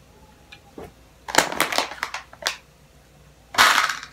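Plastic packaging crinkling as it is handled: a rustle of just under a second about a second in, a brief one midway, and another near the end.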